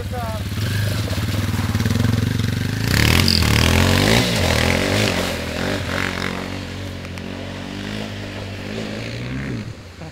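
Dirt bike engine running, getting louder and noisier about three seconds in as it revs with its pitch rising and falling, then settling to a steadier run before dropping away near the end.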